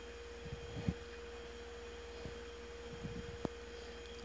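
Quiet room with a faint steady hum and a single steady tone throughout, over a few faint soft handling noises of EVA foam flowers and wire stems, with one small sharp click near the end.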